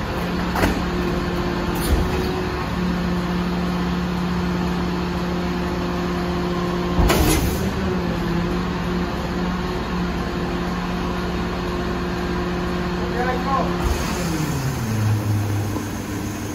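Volvo garbage truck's engine running at raised revs to drive the Mazzocchia rear loader's hydraulic packer, a steady hum with a few clunks and a louder clatter about halfway through. Near the end the revs glide down to idle as the packing cycle finishes.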